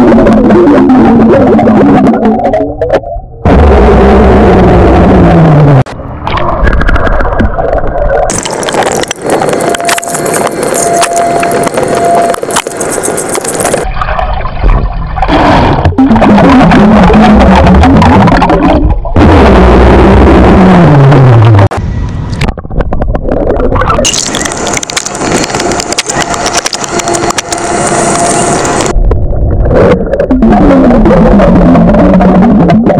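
A man burping loudly underwater: a series of long burps, several falling steadily in pitch, with abrupt breaks between them.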